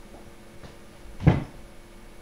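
A single short, loud thump a little over a second in, over quiet room background.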